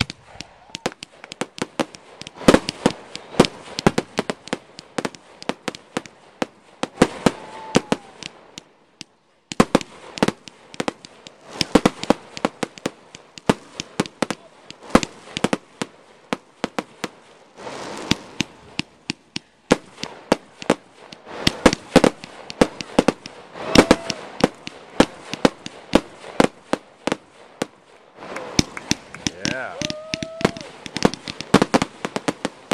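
Aerial fireworks going off in rapid volleys of sharp bangs and crackles, with brief lulls about nine and nineteen seconds in.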